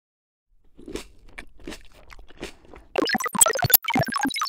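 A crunchy chewing sound effect, several soft irregular bites. About three seconds in, a bright synth melody starts suddenly and louder.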